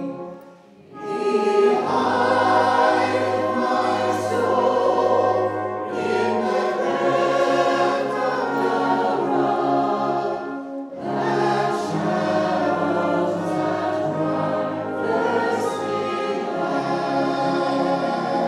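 A brass band of cornets, euphonium and tubas accompanying a congregation singing a hymn. The music breaks off briefly less than a second in, then carries on in long held phrases.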